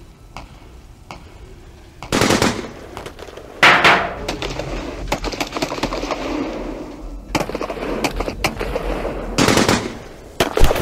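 Gunfire sound effects. The first loud burst comes about two seconds in and the loudest bang near four seconds, with a rumbling noise after it. A run of rapid sharp cracks starts about seven seconds in, ending in another loud burst.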